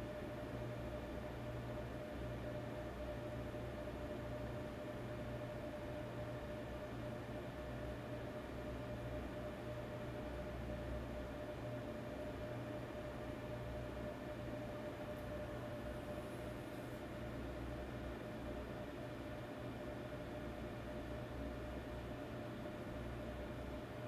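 Steady background hiss and low hum with one constant mid-pitched tone running through it: room tone.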